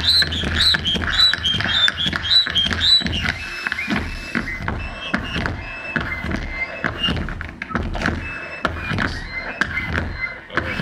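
Live amplified noise music: a steady low hum under rapid clicks and knocks and short, high chirping squeals that step up and down in pitch, busiest in the first few seconds.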